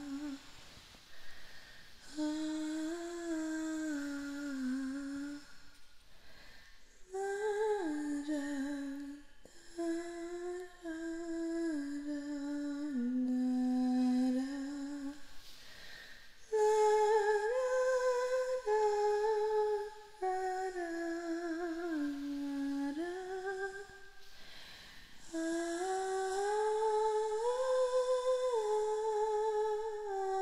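A woman humming a slow, wordless lullaby-like melody in long held notes, the phrases parted by short breaths; the tune climbs higher in the second half.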